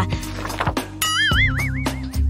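Background music, with a high warbling tone that wavers up and down for about a second, starting about a second in, like a cartoon sound effect.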